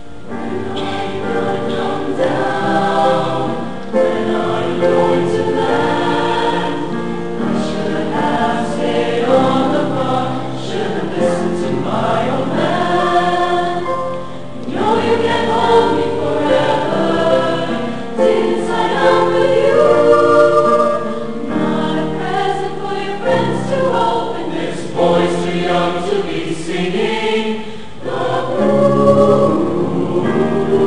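Mixed youth choir of boys' and girls' voices singing in harmony, the phrases swelling and dipping with brief breaks between them.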